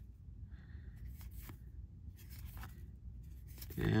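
Paper baseball cards sliding against each other as they are shuffled through a stack in the hand: a handful of faint, brief scratchy swipes.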